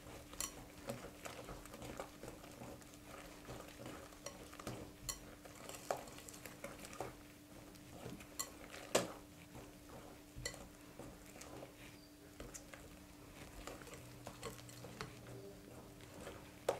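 Wire hand whisk stirring thick cake batter in a glass bowl, faint and irregular, with light clicks of the wires against the glass.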